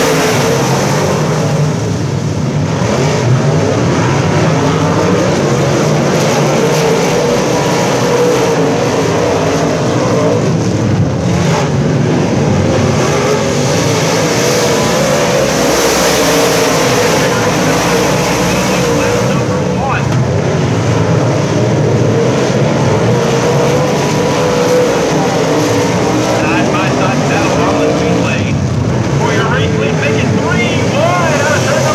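A field of dirt-track modified race cars racing at speed, their V8 engines making a loud, continuous din whose pitch wavers as the cars pass by and go round the track.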